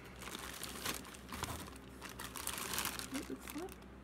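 Clear plastic goodie bag of small toys crinkling and rustling in irregular bursts as it is picked up and handled.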